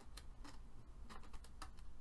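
Scissors snipping through a folded sheet of printer paper, a string of faint, quick clicks of the blades closing as the cut moves up the airplane's tail.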